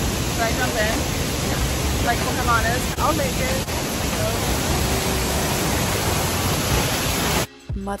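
Waterfall close by, a loud, steady rush of falling water, with voices talking over it; it cuts off suddenly near the end and music takes over.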